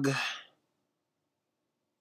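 A man's voice trailing off at the end of a word into a short breathy exhale, followed by dead silence for the rest.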